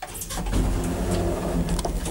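1960s two-speed traction elevator starting up just after a button press: a sudden start, then a steady machine hum with scattered clicks from the machinery.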